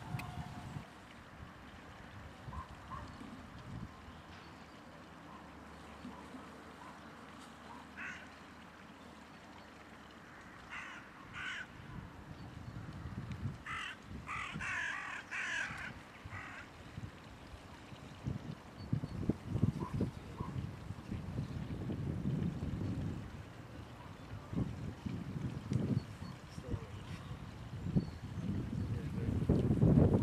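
A bird calling in a few short runs of harsh calls around the middle. In the second half there are low gusts of wind on the microphone.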